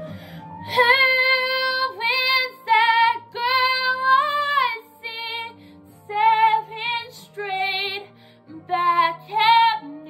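A woman singing a slow ballad over a soft backing track. Her voice comes in about a second in, in phrases with short breaks between them and vibrato on the held notes, over sustained low chords.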